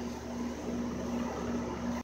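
A steady machine hum with a faint constant tone running under it.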